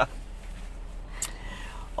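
Quiet inside a car cabin: a low steady hum under faint background noise, with a brief soft breathy hiss about a second in.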